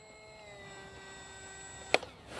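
Faint whine from the small electric motor and propeller of an Easy Trainer 800 mini model glider, sliding slightly down in pitch early on and then holding steady. There is a single sharp click just before the end.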